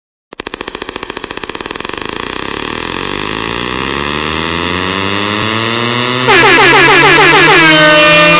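Electronic DJ remix intro effect: a string of fast pulses that speed up into a buzz while growing steadily louder, then, about six seconds in, a sudden louder air-horn-like blast of quick, repeated falling notes.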